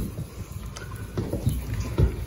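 Uneven low rumble of wind and handling noise on the microphone, with soft irregular knocks.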